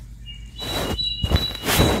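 Dress fabric rustling as it is handled close to the microphone, loudest near the end. A thin, steady high-pitched tone sounds in the background from early on.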